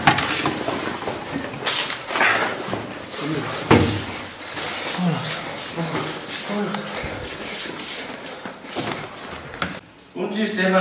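Hurried scuffling, rustling and irregular knocks as a classroom cupboard is handled in a rush, the loudest knock a little over three and a half seconds in, with short breathy voice sounds between them.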